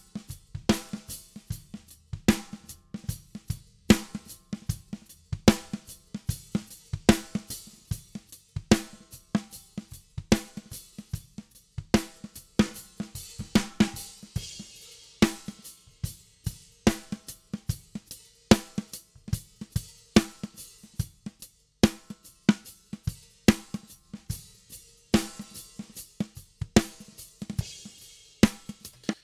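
A recorded rock drum beat, kick and snare tracks with cymbals and hi-hat bleeding in, playing back as a steady run of sharp hits. The snare is running through an envelope shaper whose attack is being raised, so the fast attack at the start of each snare hit comes through more strongly.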